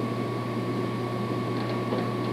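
Steady low hum with an even hiss and a faint, thin high tone: background noise of the hall and the recording, with no other event.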